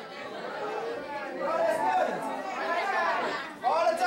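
Indistinct voices talking in a large hall, with no clear words: a congregation's chatter between hymns.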